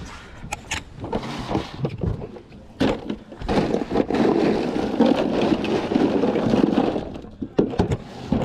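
Knocks and clunks at an ice-filled cooler, then a few seconds of loud crunching and rustling from the ice as a small snapper is handled in it.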